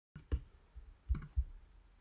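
A few faint, separate clicks and knocks, about four of them spread over two seconds, the first the loudest.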